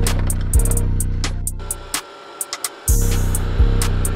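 Background music: an electronic beat with a deep bass line, kick drum and hi-hat ticks. The bass drops out for about a second in the middle, then the beat comes back.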